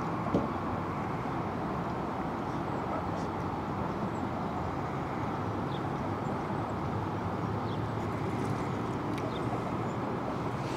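Steady outdoor rumble and hiss with no clear pitch, and one light knock about half a second in.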